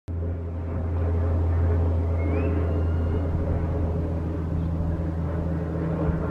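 A steady low engine drone, an even hum that holds through, with a faint thin high whistle about two seconds in.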